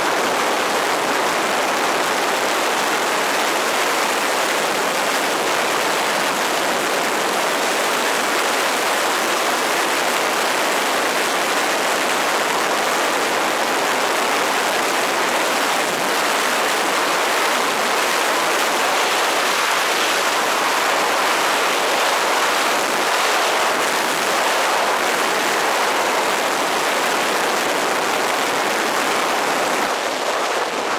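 Loud, steady rush of wind over the camera worn by a wingsuit pilot in fast flight, an unbroken even noise.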